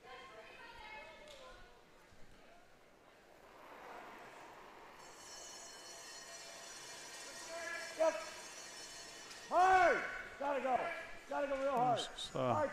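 Curling stone sliding down the ice as sweepers brush in front of it: a steady hiss that builds from about four seconds in. From about two-thirds through, curlers shout several loud sweeping calls.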